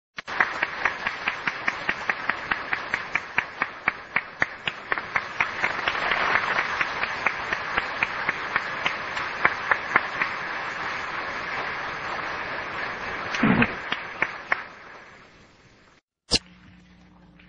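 Hall audience applauding, with sharp individual claps standing out at about five a second over the steady clapping, then fading out in the last couple of seconds. A low thump comes near the end.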